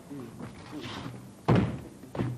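A single loud thump on the stage about one and a half seconds in, dying away quickly, after some low voices.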